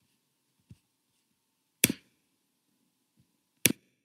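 Two sharp clicks, about two seconds apart, with a fainter low thump a second before the first.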